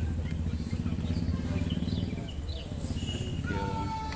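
Low rumble of street traffic with birds chirping. Near the end a held musical note starts up and carries on.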